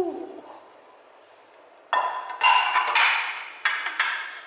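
A brief hoot-like tone falling in pitch right at the start, then, from about two seconds in, noisy scraping and squelching as a plastic spatula stirs diced fruit and cream in a plastic tub, with a second short burst near the end.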